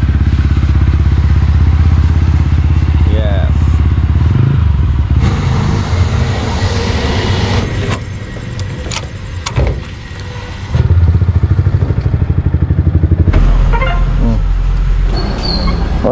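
Yamaha R15M's single-cylinder engine running loudly through an aftermarket SC Project exhaust, with a rapid, even exhaust beat. The engine sound drops back for a few seconds in the middle and then returns.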